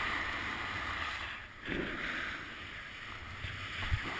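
Edges sliding and carving over groomed corduroy snow at speed, with wind rushing over the camera microphone; the rush dips briefly about one and a half seconds in.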